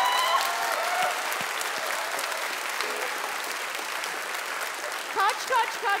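Audience applauding, the clapping slowly dying away. Voices sound over it in the first second and again near the end.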